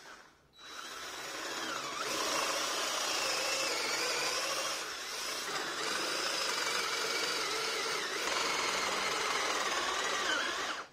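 Handheld power drill with a depth-stop drill bit boring into a wooden board. Its motor whine wavers in pitch as the bit bites and clears chips. It starts about half a second in and dips briefly about halfway through as the bit moves to the next hole.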